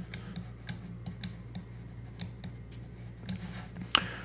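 Irregular clicks from a computer pointing device, a dozen or more over a few seconds, as numbers are drawn stroke by stroke, over a low steady hum.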